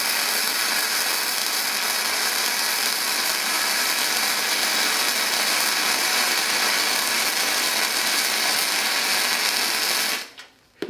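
MIG welding arc from a Vevor MIG 130 welder running 1 mm wire: a steady, dense crackling sizzle with spatter as the bead is laid, cutting off suddenly at the very end when the trigger is released.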